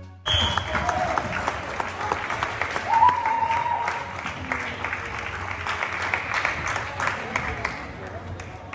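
Spectators clapping and cheering in a sports hall after a floorball goal, with voices shouting over the applause.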